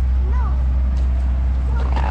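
Brief, faint children's voices over a steady low rumble.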